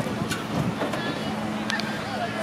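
People's voices in the background over a steady low hum, with two quick knocks near the end.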